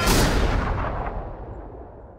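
A single loud gunshot bang with a long echoing tail that fades away over about two seconds.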